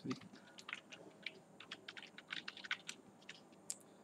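Typing on a computer keyboard: a run of quick, irregular keystrokes, faint.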